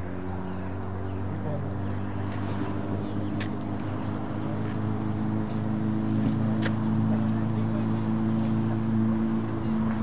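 Motor vehicle engine running with a steady low hum that slowly grows louder, with two sharp clicks in the middle.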